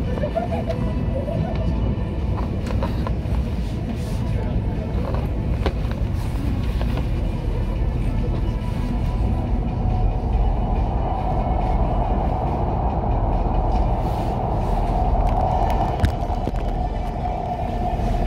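Running noise of a KTX-Cheongryong high-speed train heard inside the passenger cabin: a steady low rumble of wheels on rail. About halfway through, a higher, rougher hum joins it and grows louder.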